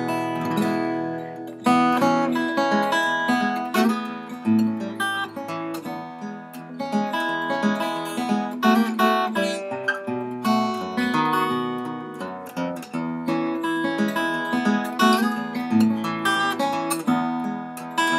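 A 1939 Gibson L-0 small-body flat-top acoustic guitar played solo: a continuous instrumental tune of picked notes and chords.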